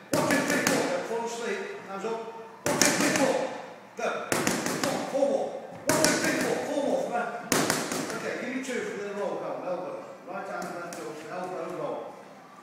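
Boxing gloves punching focus mitts: a series of sharp slaps every second or two, with voices in between.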